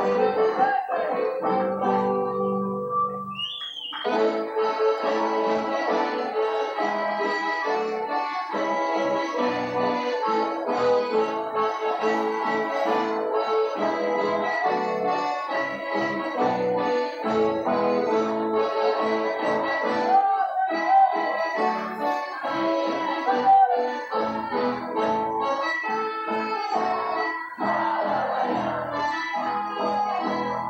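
Gaúcho folk dance music led by an accordion, played continuously for the dancers; the music thins out briefly about two seconds in and comes back in full about four seconds in.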